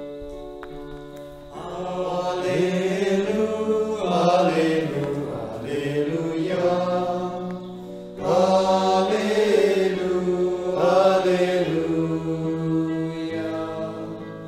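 A sung hymn or chant: a voice singing in phrases of a few seconds over sustained keyboard chords, with a short pause about eight seconds in.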